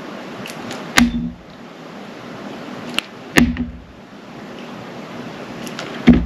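Utility knife blade cutting through a bar of soft clear glycerin soap: two sharp cuts about two and a half seconds apart, each with a dull thud, and a few faint ticks in between, over a steady hiss.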